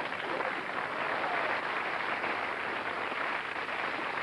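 Studio audience applauding and laughing at a punchline, a steady din of clapping.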